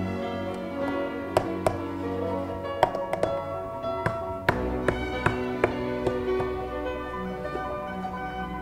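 Background music with string instruments, broken by a number of sharp clicks through the middle.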